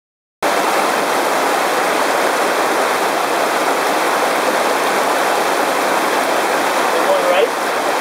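Whitewater river rapids rushing over rocks: a loud, steady wash of water that starts abruptly about half a second in.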